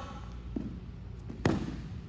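Wrestlers landing on a foam wrestling mat during a takedown: a light knock, then about a second later a heavy thud as the partner is pulled over and brought down.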